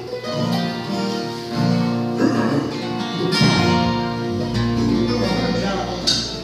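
Acoustic guitars strummed and picked together, playing a country tune.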